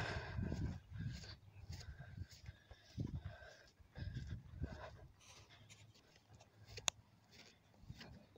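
Footsteps across wet pasture grass with phone-handling rustle, quiet and irregular, fading out after about five seconds; a single sharp click comes near the end.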